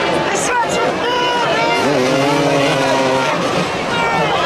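Motoball motorcycle engines revving as the riders chase the ball, their pitch rising and falling. About two seconds in, one engine climbs in pitch and then holds steady for just over a second.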